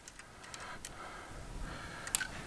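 Faint, scattered light clicks and ticks of small metal parts being handled at the rocker arm on an LS-engine cylinder head.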